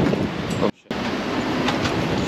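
Wind rushing over the camera microphone, a steady rumbling hiss that cuts out abruptly for a split second just under a second in.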